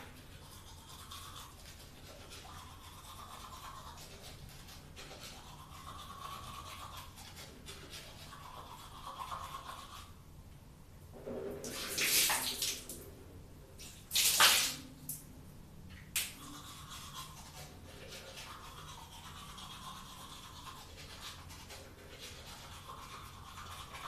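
Manual toothbrush scrubbing against teeth in a steady back-and-forth rhythm. Near the middle the brushing stops for a few seconds of louder splashing bursts, from rinsing or spitting at the sink, then the scrubbing resumes.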